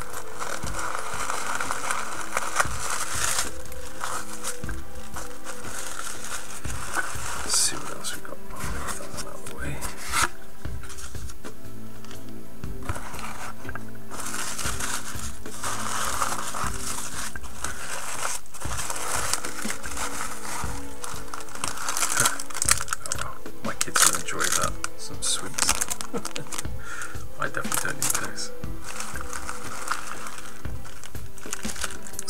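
Paper and plastic packing material crinkling and rustling in irregular handfuls as a box is unpacked: tissue paper, bubble wrap and shredded paper fill being handled. Steady background music plays underneath.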